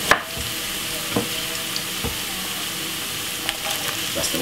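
Sliced carrots sizzling steadily in hot oil in a frying pan, with a few sharp clicks, the loudest right at the start.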